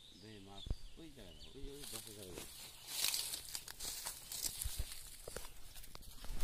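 A man's voice talking quietly for about two seconds, then a few seconds of rustling and crackling among dry leaves and grass.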